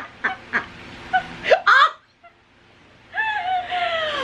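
Women laughing in short, high-pitched bursts, with a shrill squeal of laughter about one and a half seconds in, a brief pause, then a long drawn-out honking laugh that falls in pitch near the end.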